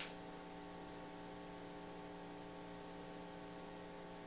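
Steady electrical hum of several tones over faint hiss, with a faint click at the very start.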